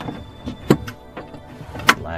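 A metal gate latch clicking twice as it is swung over and engaged on its pin: a small click, then a sharper, louder one near the end.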